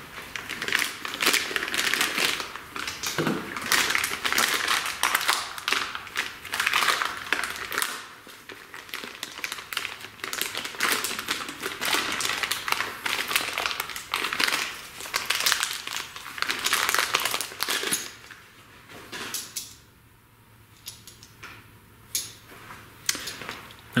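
Plastic packaging crinkling and rustling as it is handled and unwrapped, a dense run of crackles that thins to a few scattered clicks for the last several seconds.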